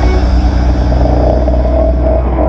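Dirt bike engines running at idle, a loud low note with a fine, even pulse. A higher steady engine note comes in about halfway through.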